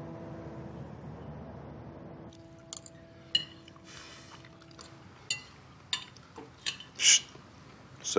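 Cutlery clinking and scraping on plates at a meal, with several sharp clinks from about a third of the way in. A faint held music note lingers under the first half.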